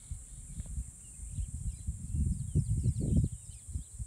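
Wind buffeting the microphone in uneven gusts, strongest between about two and three seconds in, over faint bird chirps and a steady high insect buzz.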